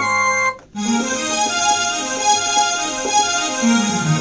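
Roland XPS-30 synthesizer playing a melody in a flute voice, breaking off briefly about half a second in, then going on in a strings voice with held notes.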